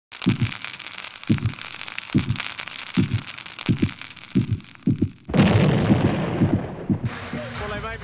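Broadcast intro sound effect: a crackling, fizzing hiss over low drum hits that come faster and faster, ending in a loud boom about five seconds in. Arena crowd noise with voices starts near the end.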